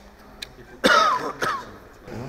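Two short, loud vocal bursts from a person, about a second in and half a second apart, each falling in pitch, of the throat-clearing or cough kind, with a faint click just before.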